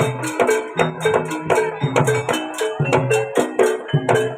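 Jaranan gamelan music accompanying a kuda lumping dance: drums and tuned gongs playing a fast, steady beat, with a bright metallic clash about four times a second.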